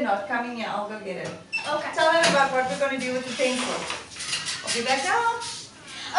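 A woman's voice, with small hard objects clattering against each other on the table.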